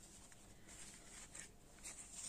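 Near silence with faint rustling of paper ephemera being handled and slid out of a paper envelope, a little louder near the end.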